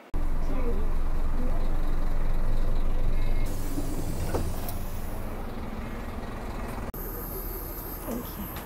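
Bus engine running with a steady low rumble, louder in the first few seconds.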